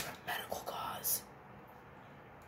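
A sick woman whispering a few short words in about the first second, her voice gone.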